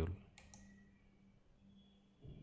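A single faint computer mouse click a little after the start, over a low steady hum.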